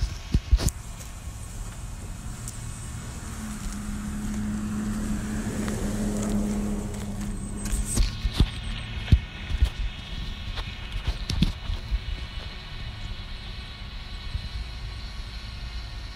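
A motor vehicle passing, swelling to its loudest about six seconds in and then fading, over a steady low outdoor rumble, with a few sharp clicks scattered through.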